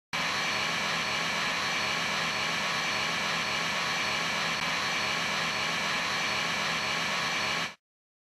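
Steady hiss of white noise, like television static, that starts abruptly and cuts off suddenly shortly before the end.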